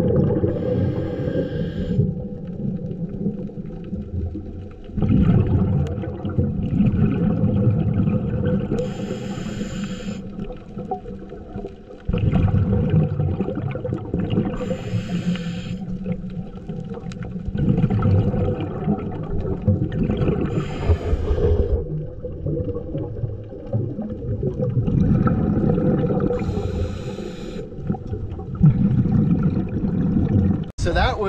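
Scuba regulator breathing underwater, heard close: a short hissing inhale about every five or six seconds, each followed by a long, low bubbling exhale.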